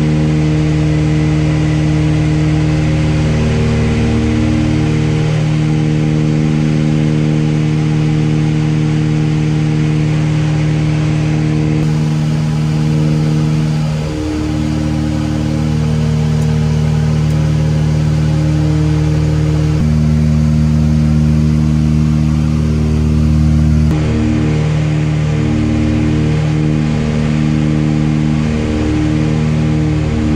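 Steady, loud drone of a Britten-Norman Islander's twin piston engines and propellers, heard from inside the cockpit in flight. The engine tones shift a few times along the way.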